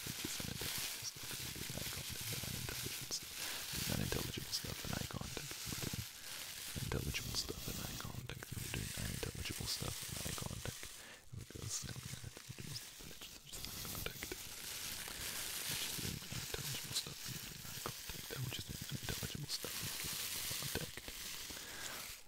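Unintelligible ASMR whispering and low mumbling in a deep male voice close to the microphone, coming and going in short phrases, with scattered small mouth clicks.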